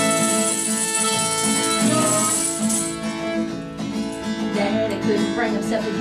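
Country band playing an instrumental break: strummed acoustic guitar, fiddle and a shaken tambourine. Singing comes back in near the end.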